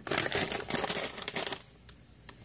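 A plastic bag of dog treats crinkling as it is handled, for about a second and a half before it stops.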